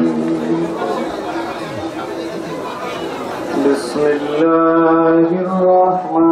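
Indistinct voices murmuring, then, from about four seconds in, a man chanting melodically through a microphone and PA, holding long steady notes.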